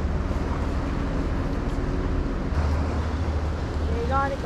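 Steady low rumble of wind on the microphone and sea washing against the rocks, with a faint steady hum that fades out about halfway through.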